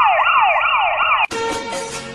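Siren sound effect with a fast wail, its pitch sweeping up and down about three times a second, cut off abruptly just over a second in. Music takes over after it.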